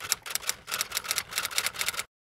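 Typewriter sound effect: a rapid run of key clicks, several a second, laid under a caption typing itself out letter by letter.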